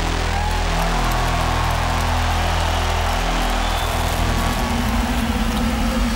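Deep, sustained bass drone from the arena's PA system, shifting in pitch about a second in and again past three seconds, under steady crowd noise filling a large arena.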